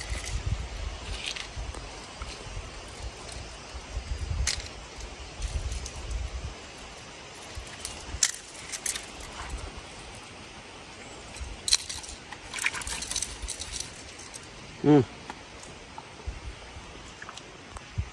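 Light, scattered clicks and jingles of fishing tackle being handled: a lure's hooks and a baitcasting rod and reel, with a quicker run of clicks about twelve seconds in. A low rumble sits under the first few seconds.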